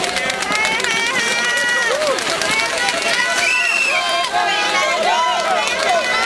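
Spectators shouting and cheering a passing rider on, many voices overlapping with high, drawn-out calls, among scattered sharp clicks.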